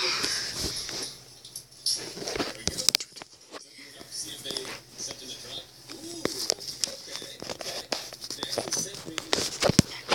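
Low voices and whispering, broken by scattered short clicks and taps.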